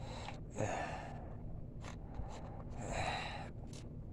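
A man's audible breaths close to the microphone: one about half a second in and a longer one about three seconds in.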